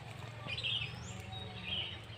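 Birds chirping outdoors: two short calls, about half a second in and again near the end, over a low steady hum.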